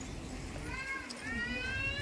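A small child crying: a high, wavering wail that starts about half a second in and grows louder, over the low murmur of a crowd.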